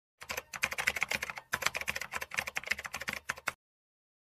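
Fast computer-keyboard typing clicks, a dense run of key presses with a short break about a third of the way through, stopping shortly before the end.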